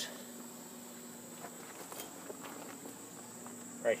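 Quiet outdoor background with a steady high insect trill, and a few faint ticks and knocks in the middle.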